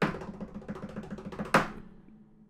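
Drum roll sound effect: a fast, even roll of strokes ending in a single loud crash about one and a half seconds in, then fading. It builds suspense just before an award winner is named.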